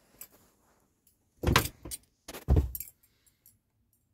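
Two loud bursts of rustling and knocking about a second apart, with a few faint clicks around them: the phone being handled and moved about.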